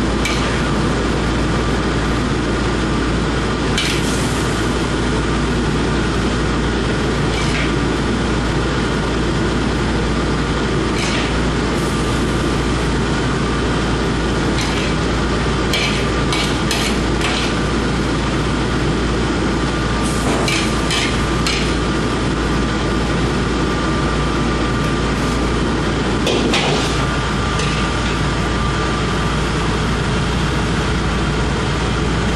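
Steady drone of commercial kitchen machinery with a faint steady whine, broken by scattered light clinks of a metal ladle against a china plate, several in quick succession around the middle of the stretch and again near the end.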